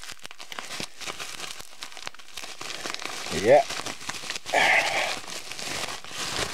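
Plastic bubble wrap crinkling and crackling in the hands as it is pulled off a toy figure, in a steady run of small crackles.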